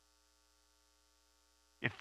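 Near silence with a faint, steady electrical hum, until a man's voice starts speaking near the end.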